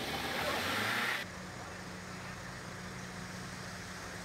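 Street noise with voices in the first second, then an abrupt cut to a steady low hum of idling vehicle traffic.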